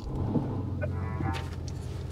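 Aurus Senat's twin-turbo V8 starting and settling into a steady idle, heard from inside the cabin. The car radio's music comes in faintly about a second in.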